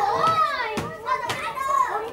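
Several children's voices crying out together in overlapping, high, wavering calls without clear words, with a couple of short knocks among them.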